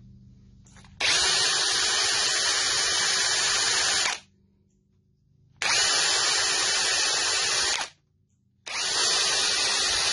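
Power-driven wire wheel scrubbing carbon buildup off a Briggs & Stratton V-twin intake valve. It runs in three stretches of a few seconds each, and each one starts and stops abruptly.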